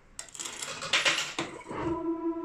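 Metal pachislot medals clattering together for about a second, with the slot machine's steady electronic tone coming back in near the end.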